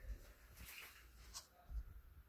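Near silence with faint low thumps and one light click about a second and a half in.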